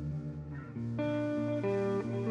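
Electric guitar and bass guitar playing sustained chords, with new notes coming in and the music growing louder about a second in.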